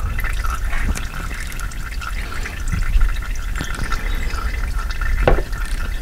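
Used engine oil pouring from the open drain plug hole into a drain bucket: a steady, splashing stream.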